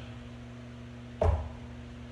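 A single dull thump about a second in, over a steady low hum.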